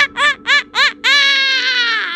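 A girl's high-pitched laugh: four quick, separate "ha" notes, each rising and falling in pitch, then one long held note that sinks slightly.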